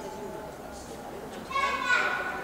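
Indistinct voices echoing in a large hall, then a loud, high-pitched call starting about one and a half seconds in.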